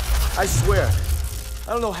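Film sound effect of a glowing lightning bolt: a steady low electric rumble with a faint fine crackle. A young man's voice speaks briefly about half a second in and again near the end.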